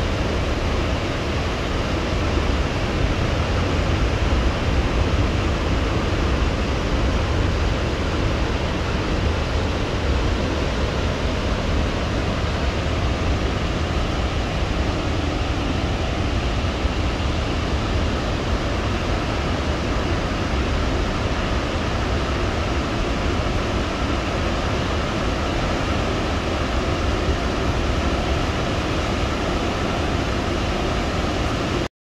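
Victoria Falls' water plunging into the gorge: a steady, unbroken rush of noise with a deep low rumble underneath.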